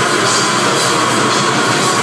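Black metal band playing live: distorted electric guitars and drum kit in a loud, dense, unbroken wall of sound, heard from within the crowd.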